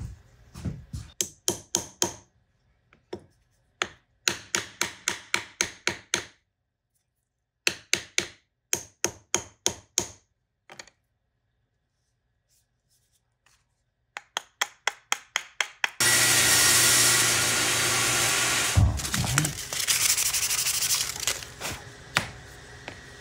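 Quick bursts of sharp wooden knocks, about four a second, from the newly assembled wooden mallet being tapped, with silent gaps between the bursts. Near the end a steady, loud noise takes over and lasts to the end.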